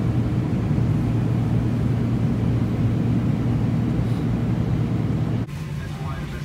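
Airliner cabin noise in flight: a loud, steady low drone of engines and rushing air, which drops to a quieter level near the end.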